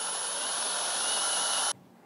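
Cordless drill spinning a countersink bit into a walnut leg to recess a screw head: a steady whine that cuts off suddenly near the end.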